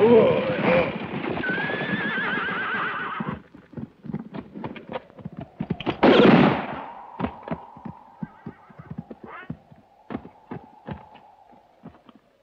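Film sound effects of galloping horses, with a horse whinnying in the first few seconds. The hoofbeats then thin out into scattered clip-clops. About six seconds in comes a loud, short report as a revolver is fired.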